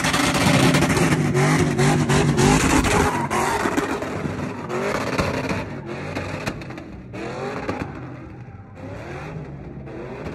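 Cadillac CTS-V's V8 revving hard during a burnout drift, its pitch rising and falling as the throttle is worked. Loud at first, it grows fainter from about three seconds in as the car slides away across the lot.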